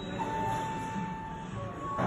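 Elevator arrival chime: one steady electronic tone lasting about a second, sounding as the hall lantern lights to announce the car's arrival, over quiet background music.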